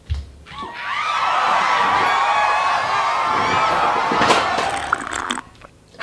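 A short thump, then a crowd cheering and screaming for about four and a half seconds, many voices wavering over one another.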